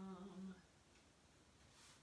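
A woman humming one short, steady note that stops about half a second in, followed by near silence.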